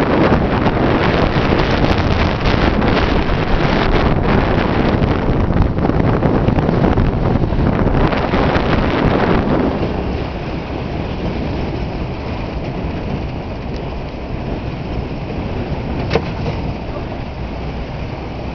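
Truck driving along a bumpy dirt track: engine and road noise mixed with wind rushing over the microphone. The noise is heaviest for about the first ten seconds, then eases and stays steady.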